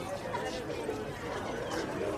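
Indistinct voices talking and chattering over a noisy background.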